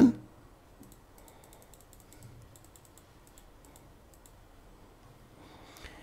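Faint, quick, irregular clicks of a computer keyboard being typed on, over low room hiss, in the first half.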